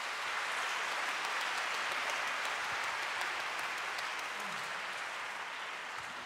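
Concert hall audience applauding steadily, easing off slightly near the end.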